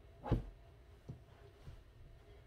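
A soft thump as a back cushion is pushed into place on an upholstered loveseat, followed by two fainter thuds.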